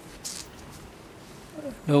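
Faint steady hiss of an open microphone with a short breath-like hiss about a quarter second in, then a man starts speaking near the end.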